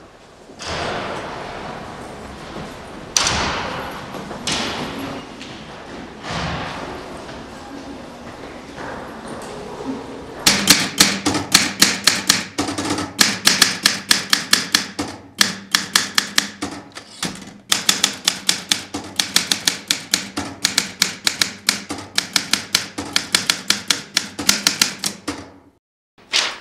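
A typewriter being typed fast, with sharp, even keystroke clicks at about eight a second and two short pauses. The typing begins about ten seconds in and follows several softer swelling noises.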